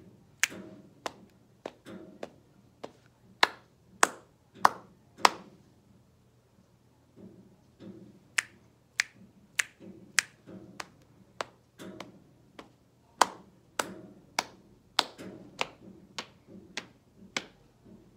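Body percussion by one person: sharp finger snaps and hand strikes in a steady beat, a little under two a second, mixed with softer, duller hits on the body. The pattern pauses briefly partway through, then resumes.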